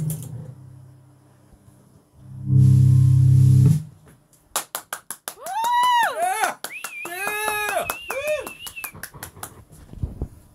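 Nord Electro 2 stage keyboard on an organ sound: a chord fading away at the start, then a short, loud, sustained low chord about two and a half seconds in. After it come several seconds of rapid clicks and swooping high pitched tones.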